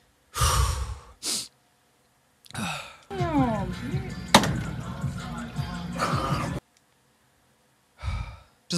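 A man sighs heavily into a close microphone, followed by a second short breath. A few seconds later, a TikTok clip plays: voices over music, which cut off suddenly.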